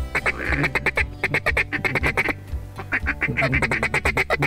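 Rapid runs of loud duck quacks, about seven a second, in two runs with a short break near the middle, over low background music.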